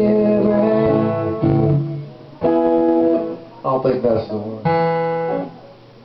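A man singing long held notes to his own strummed acoustic guitar, in phrases with short breaks, the sound falling away near the end.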